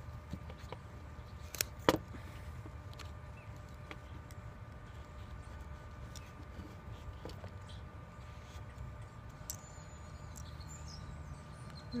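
Scissors snipping through a sandal's fabric straps: a few scattered sharp clicks, the loudest about two seconds in, over a low steady background rumble.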